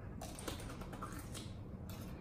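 Raw cucumber being chewed, an irregular run of crisp crunches.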